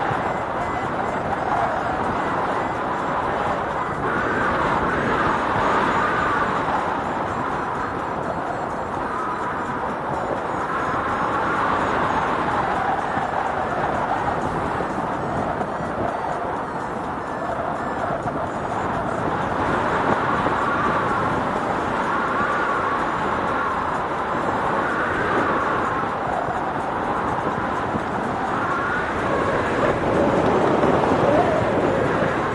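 Steady rush of wind over the microphone of a paraglider in flight, with a faint wavering higher tone coming and going over it.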